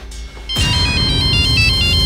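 Mobile phone ringtone: a quick electronic tune of high notes stepping up and down, starting about half a second in, over low background music.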